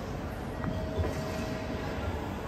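Busy railway station ambience: a steady low rumble, with a faint held tone from about half a second in until near the end.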